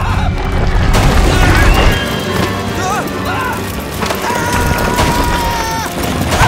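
Cartoon action soundtrack: busy orchestral score mixed with crashes and booms, and short yelps and exclamations from the characters. A high note is held for over a second about four seconds in.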